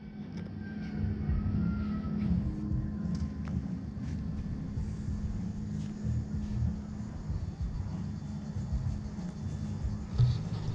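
Steady low rumble with a constant low hum underneath, an outdoor background noise picked up by a handheld camera, with a few faint ticks.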